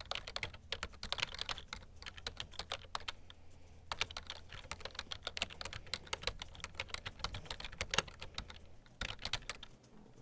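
Fast typing on an ASUS laptop keyboard: a quick, irregular run of key clicks, with a low hum underneath that drops out about nine seconds in.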